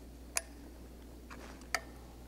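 Two sharp clicks about a second and a half apart as small plastic wire connectors are pulled loose by their tabs from a UR5 robot joint, over a steady low hum.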